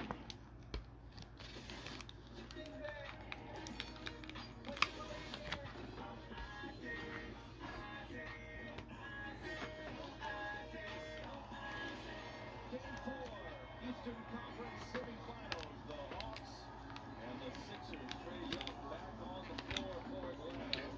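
Faint background speech and music, with scattered sharp clicks and ticks from trading cards and packs being handled.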